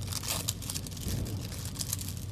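Light, irregular rustling of quilting paper being handled and smoothed by hand over layered fabric, over a low steady hum.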